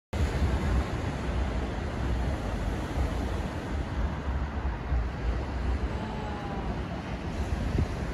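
Surf breaking on a beach, with wind buffeting the microphone in a low, uneven rumble.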